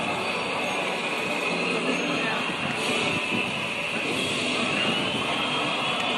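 Indistinct voices over steady outdoor background noise.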